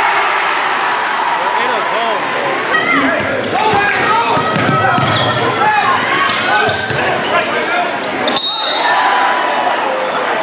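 Live basketball game sound in an echoing gym: crowd and player voices, a ball bouncing, and many short squeaks of sneakers on the court floor. There is an abrupt cut about eight and a half seconds in.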